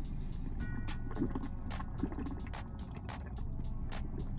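Swallowing and small mouth clicks while drinking from a carton, irregular and several a second, over a steady low hum of a car interior.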